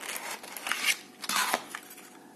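Cardboard retail box being opened and handled by hand: three short rustling, scraping bursts of cardboard packaging.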